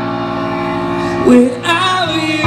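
Live band music from a slow ballad: a held guitar chord rings, and a singing voice comes in with wavering pitch about one and a half seconds in.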